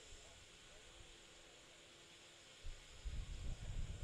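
Faint background hiss on the broadcast feed, joined by low, uneven rumbling in the last second and a half.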